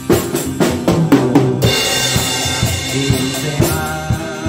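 Pearl Export drum kit played by a beginner along to a backing song: a quick run of drum hits, then a cymbal crash about a second and a half in that rings on over the music.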